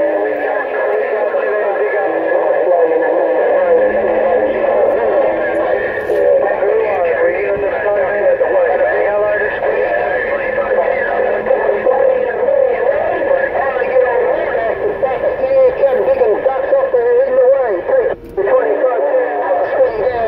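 Incoming transmissions over a Stryker SR-955HP CB/10-meter transceiver: thin, narrow-band voice traffic, garbled and overlapping, with steady heterodyne whistles underneath. The signal drops out for a moment near the end, then a low steady tone follows.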